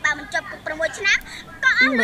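Speech only: a woman talking in short phrases, with a brief pause about one and a half seconds in.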